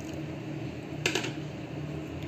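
Kitchen sounds while beaten eggs are poured into a glass mixing bowl of flour and milk: a low steady hum with one light click about a second in.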